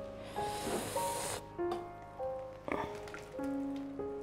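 Soft background music of slow, held notes, with a brief soft hiss early on and a faint wet pouring of thick fermented barley mash into a stainless steel bowl.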